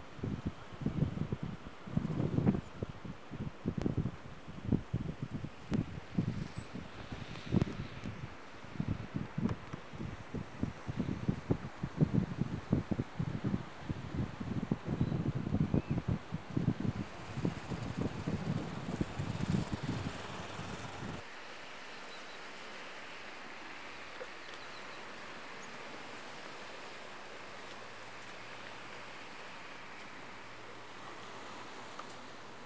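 Wind buffeting the camcorder microphone in irregular low rumbling gusts. The gusts stop abruptly about two-thirds of the way through, leaving a steady faint hiss.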